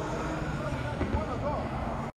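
Outdoor street ambience: indistinct voices talking over a steady low rumble of traffic.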